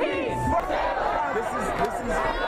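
Crowd of street protesters marching, many voices calling out at once.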